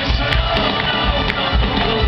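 Live rock band playing with a steady beat, guitars over drums and bass, recorded from the audience on a handheld camera.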